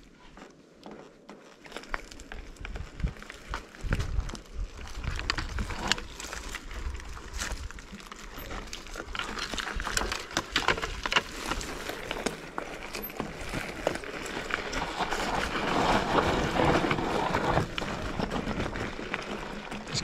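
Mountain bike riding down a rocky, leaf-strewn dirt trail: tyres crunching over dry leaves and loose stones, with dense clicks and rattles from the bike over the bumps. It starts quietly and grows louder and busier in the second half.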